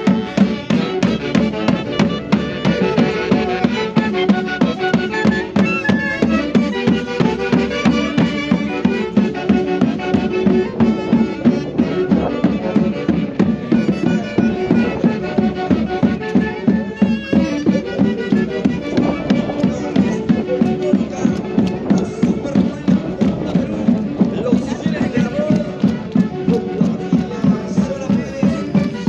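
Traditional Andean folk music for the Santiago fiesta: melody instruments playing over a steady, even drum beat.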